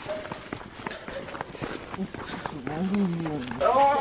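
Voices talking quietly, under a scatter of irregular clicks and knocks. A voice comes up more clearly past the middle.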